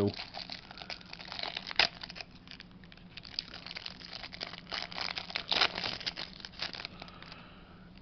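Thin clear plastic wrapping crinkling and crackling as it is opened and a stack of trading cards is slid out, with a sharp crackle about two seconds in and busier bursts of rustling near the middle and later on. A faint steady hum runs underneath.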